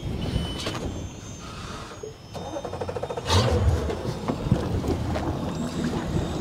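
Mercury Verado 300 V8 outboard starting a little over halfway through and settling into a quiet, steady idle in its normal (non-sport) exhaust mode.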